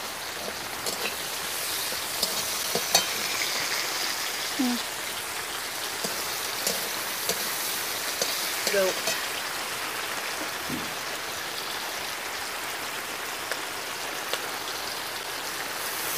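Prawns and green chillies sizzling steadily in hot mustard oil in an aluminium kadai, with occasional faint clicks of the metal spatula stirring them.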